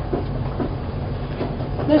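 Steady low rumble with a faint hiss from running kitchen equipment in a small commercial kitchen.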